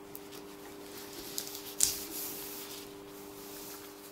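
Knife blade rubbing and scraping back and forth against a plastic sheet on a steel bench, easing dried piped icing off the plastic, with small ticks and one sharper click about halfway through.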